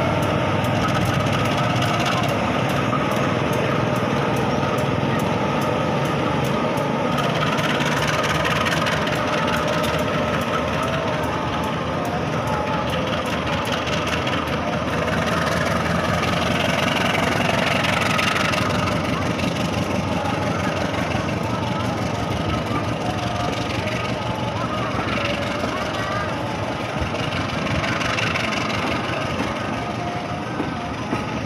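Diesel-hauled passenger train passing slowly: a steady rumble of the locomotive's engine and the carriages' wheels rolling over the rails. The train is held to about 20 km/h by a speed restriction over a newly laid turnout and new sleepers.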